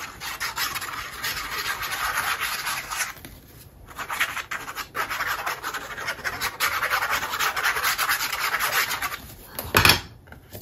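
Fine plastic tip of a liquid glue squeeze bottle scratching across paper as glue lines are drawn, in two long spells with a short pause about three and a half seconds in. A brief louder knock near the end.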